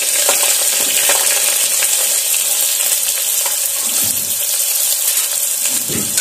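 Hot oil sizzling steadily in an aluminium pressure cooker as sliced onions and curry leaves are tipped in from a steel plate and stirred, with a few light metal clinks.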